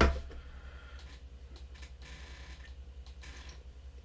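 Quiet room tone: a low hum that pulses at a fast, even rate, with a few faint clicks and a short thump right at the start.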